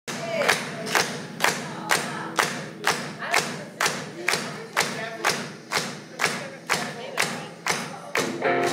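Steady, evenly spaced sharp hits about twice a second, the beat at the start of a live rock song, with voices shouting over it.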